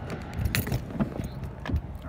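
A few sharp clicks with keys and rustling as a car door is unlocked, the phone rubbing against a cotton shirt.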